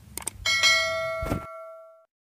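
Subscribe-button sound effect: a couple of quick mouse clicks, then a bell chime of several steady tones that fades away over about a second and a half, with one more click partway through.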